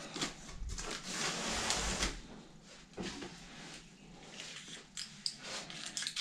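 A large cardboard box being handled and set down: a rustling, scraping stretch over the first two seconds with low thuds, then a few scattered knocks and taps.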